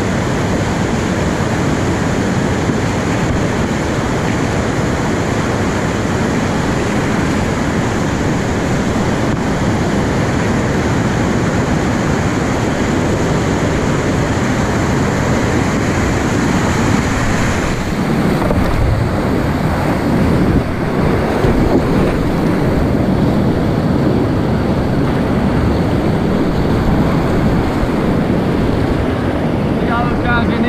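Steady rush of whitewater rapids on a river running at about 500 cfs, heard from a kayak close to the water. A little over halfway through, the hiss turns duller and lower with more rumble.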